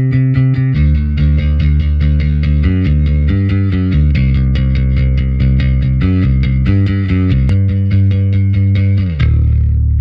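Sampled electric bass guitar from a Kontakt rock library playing bass-line phrases, its saved loop segments cycling one after another. Near the end it settles on a single held note that rings out.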